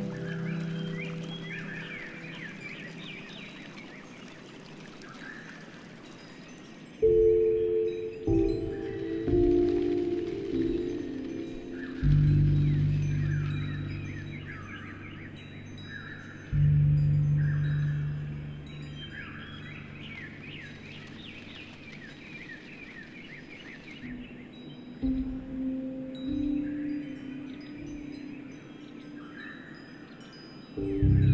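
Slow, sparse piano music: single notes and chords ring out every few seconds and fade. Under it are repeated bird chirps and a soft, steady rush of running water.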